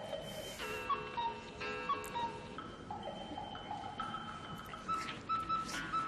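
Light background music: a melody of held high notes that shift in pitch every second or so, with a few short sharp accents in the second half.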